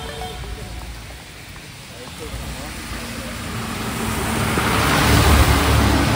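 A bus passing close on a wet road: tyre hiss through standing water and engine rumble build steadily in loudness as it nears, loudest near the end.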